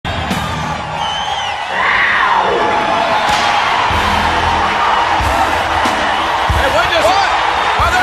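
Large arena crowd cheering and whistling over music, the cheer swelling about two seconds in, with heavy beats landing about every second and a half.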